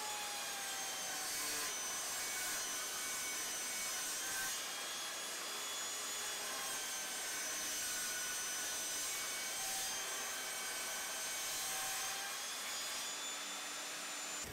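Evolution Rage 5-S table saw running steadily as its blade rips a sheet of HDPE plastic into strips.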